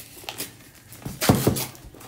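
Cardboard trading-card box being handled and opened: a few light knocks of card stock, the loudest about a second and a half in.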